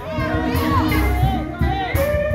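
Male gospel group singing live, one voice swooping up and down in runs over a low, steady bass.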